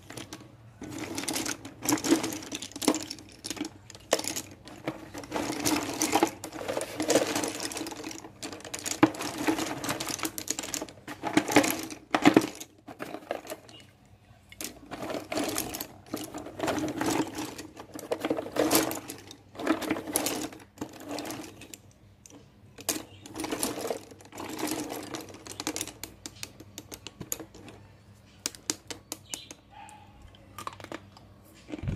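Loose slate pencils clattering and clicking against one another and the cardboard box as a hand stirs through the pile, in bursts of rapid clicks that thin out to scattered ones near the end.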